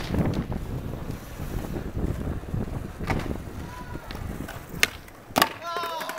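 Skateboard wheels rolling on concrete with a steady rumble, then two sharp wooden clacks in the last second and a half as the board pops and strikes the ledge, followed by a brief tone falling in pitch.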